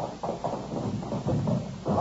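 Radio-drama sound effect of footsteps hurrying on a hard floor: a quick, uneven run of taps.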